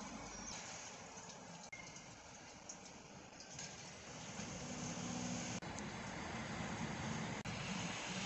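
Steady outdoor background noise with a low hum that grows louder about halfway through, broken by a few brief dropouts.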